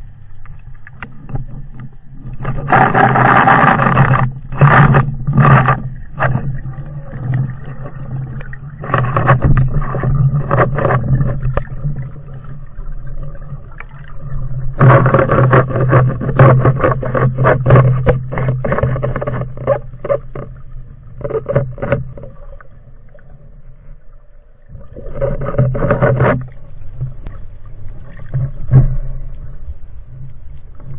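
Muffled underwater rushing and bubbling water noise picked up by a camera on a speargun, coming in loud stretches of a few seconds with quieter gaps between them.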